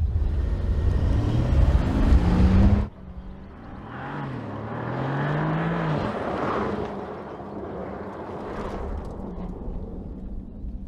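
Porsche Panamera driving a cone course. A close, loud pass with a deep rumble and a rising engine note cuts off suddenly about three seconds in. It gives way to a quieter, more distant engine note that rises as the car accelerates, over tyre and road noise.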